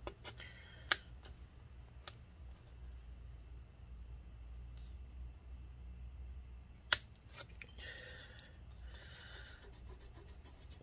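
Plastic pry tool and fingers working leftover battery adhesive on a MacBook Pro's aluminium case, giving a few faint clicks and a scratchy stretch as a strip peels up near the end.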